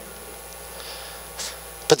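Pause in a man's amplified speech: low room tone with a faint steady hum from the sound system, a brief faint noise about a second and a half in, then his voice starts again at the very end.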